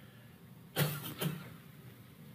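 Two short coughs about half a second apart, against faint room tone.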